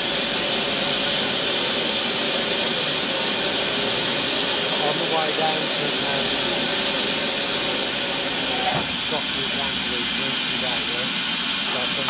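BR Standard Class 4MT 2-6-0 steam locomotive standing with steam escaping in a steady hiss. Faint voices come through late on.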